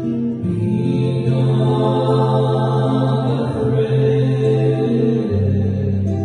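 Voices singing slow, sustained notes over acoustic guitar; the voices come in fuller and louder about half a second in.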